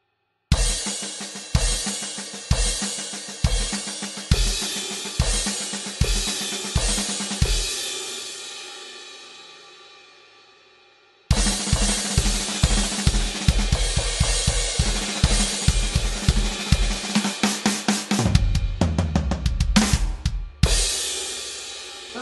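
Electronic drum kit playing the paradiddle-diddle on the crash cymbals with bass drum: about eight evenly spaced crash-and-kick strokes, roughly one a second, the last crash ringing out and dying away. After that comes a faster, busier run of the rudiment with bass drum, ending in a quick fill and a closing crash.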